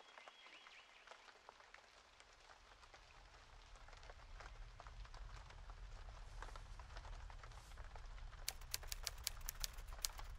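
Faint ambience of scattered small clicks over a low drone that swells from about three seconds in. Near the end comes a quick run of about ten sharp typewriter-key clacks as a title is typed out letter by letter.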